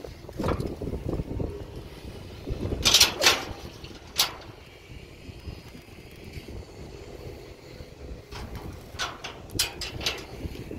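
Wind buffeting an outdoor microphone at the top of a high rope-jump platform, a steady low rumble. Over it come a few short, sharp rustles and knocks, loudest about three seconds in and again near the end.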